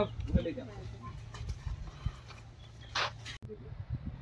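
Indistinct voices at a moderate level over a steady low hum, with a brief hiss about three seconds in; the sound then changes abruptly at an edit.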